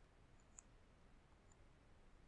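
Near silence with a faint computer mouse click about half a second in.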